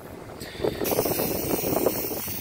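Aerosol spray-paint can spraying: a steady hiss that switches on just under a second in, with wind buffeting the microphone.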